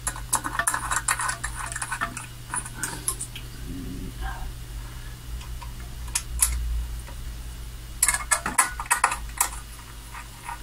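Light metallic clicking and rattling of small screws being fitted and turned into a metal bracket, in clusters about half a second to two seconds in and again around eight to nine seconds in, over a steady low hum.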